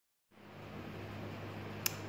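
Quiet room tone: a steady low hum with faint hiss, and one short click just before the end.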